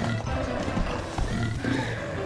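Cartoon soundtrack: score music with a beast-like growling voice over it.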